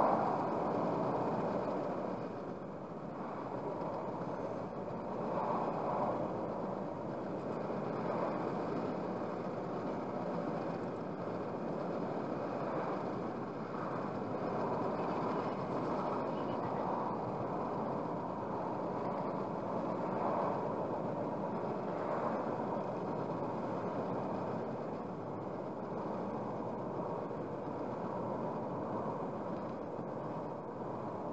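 Steady road noise inside a car cruising at about 70 km/h, picked up by a dashcam's microphone: an even rush of tyre and engine noise that swells gently now and then.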